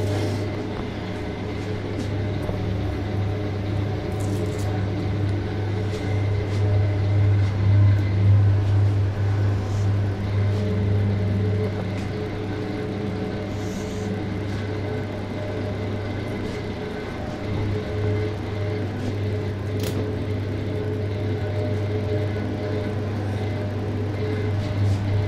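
Walk-in chiller's refrigeration unit humming steadily, a deep hum with a few fainter higher tones over it, and a few light clicks and knocks scattered through.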